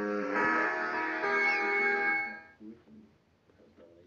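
Short guitar logo jingle: plucked chords ring for about two and a half seconds and then stop, leaving near silence.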